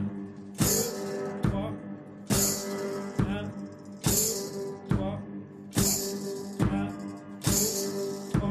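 One-man-band kit played with the feet under a guitar: a bass drum thumps on every beat, a little under once a second, and a foot-worked cymbal with a tambourine on it crashes on every second beat (two and four). A guitar chord rings along in time.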